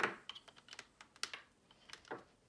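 Light plastic-and-metal clicks and taps from a USB-A cable plug knocking against the side of a laptop as it is lined up with the USB port: one sharper click at the start, then several fainter irregular ones.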